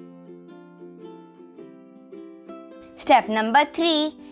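Soft background music of light plucked-string notes; a voice starts speaking about three seconds in.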